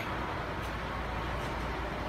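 Steady low mechanical hum with an even hiss, unchanging throughout.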